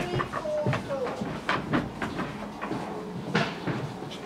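Hooves of a sheep knocking irregularly on a slatted timber pen floor as it walks about, with voices faint in the background.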